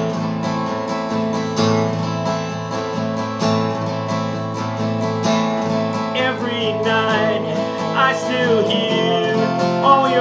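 Martin D28 dreadnought acoustic guitar strummed steadily through a chord progression. A man's singing voice comes in over it about six seconds in.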